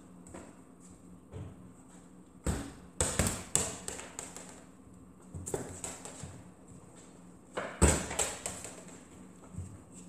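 Thuds and knocks from a football being kicked and bouncing along a hallway, mixed with running footsteps on a wooden floor. The knocks come in two flurries, about two and a half to three and a half seconds in and again near eight seconds, where the loudest falls.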